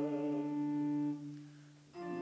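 Church choir humming a sustained chord that stops about a second in and dies away in the room's echo; a new steady chord begins right at the end.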